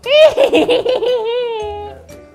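A witch character's high-pitched cackling laugh: a quick run of laughs, then one long drawn-out note that slowly falls in pitch and fades out near the end.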